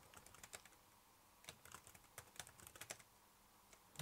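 Faint keystrokes on a laptop keyboard: a few quick key presses, a pause of about a second, then a longer run of typing.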